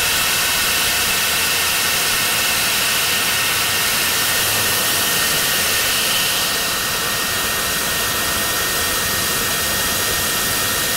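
Rocket engine of the Dawn Aerospace Aurora spaceplane running at full thrust, heard from the onboard camera through the takeoff roll and climb-out: a steady, loud rushing noise with a thin high whine running through it, easing slightly about six and a half seconds in.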